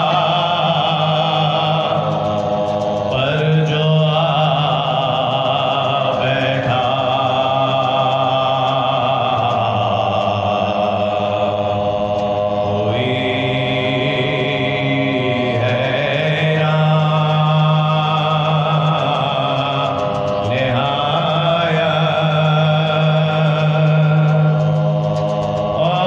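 Soz khwani, a Shia mourning elegy: a male voice chanting in long, drawn-out melodic phrases, each held note slowly bending in pitch, without instruments.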